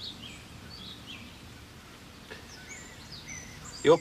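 Songbirds chirping now and then in short high calls over a faint steady outdoor background. A man's voice begins just at the end.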